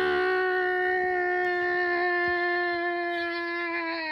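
A person's voice holding one long, steady cry, "ahh", for about four seconds, the pitch sliding down as it dies away at the end.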